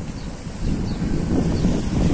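Wind buffeting the microphone outdoors, a steady low rumble with no other distinct sound.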